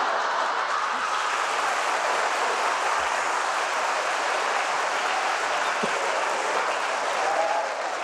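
Live studio audience applauding steadily, with the clapping easing off just before the end.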